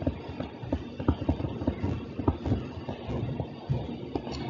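Irregular soft taps and knocks of a stylus writing on a tablet, several a second.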